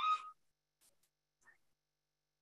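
A woman's voice ends a word on a rising pitch right at the start, then near silence with a few faint, short clicks.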